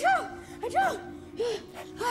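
A boy crying into a tissue: about three short, hitching sobs that rise and fall in pitch, with breaths between them, over soft background music.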